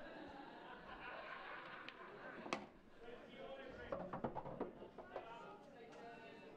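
A pool cue striking the cue ball with one sharp click, followed a second and a half later by a quick cluster of lighter clicks as the balls collide and a yellow is potted. Faint murmured chatter runs underneath.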